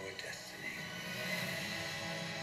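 Movie-trailer soundtrack playing from a television in the room: sustained music with a voice over it.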